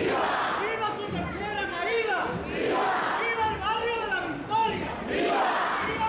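A dense street crowd with many voices talking and calling out at once, swelling louder every two to three seconds.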